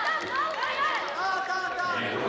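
Several voices shouting over one another, with high calls rising and falling, over a background of arena crowd noise.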